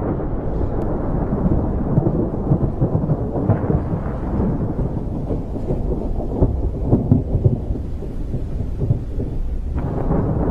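Deep, continuous rumbling of rolling thunder, swelling in uneven surges and loudest a little past the middle.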